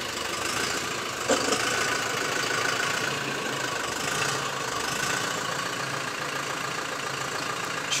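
LOVOL 1054 tractor's diesel engine running steadily at low revs as the tractor creeps forward, rolling its front wheel onto a portable platform scale.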